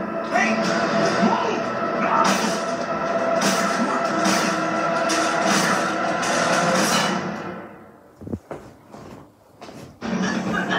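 Dramatic television score heard through a TV's speakers, with sharp percussive hits about once a second over sustained tones. It fades out about three-quarters of the way through, leaving a much quieter stretch with a few isolated knocks.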